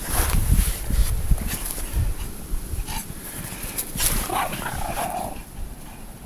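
A Pomeranian whining and yipping in short cries a few seconds in, over low rumbling noise on the microphone.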